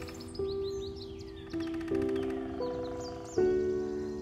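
Light instrumental background music: soft keyboard chords that start and fade about every second, with high bird-like chirps over them.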